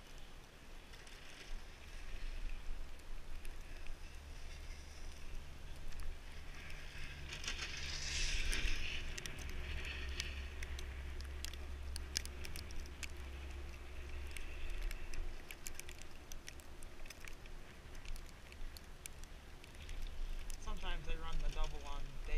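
Wind rumbling on the microphone of a camera riding up on an open chairlift, with scattered small clicks and rustles through the middle of the stretch. A voice starts near the end.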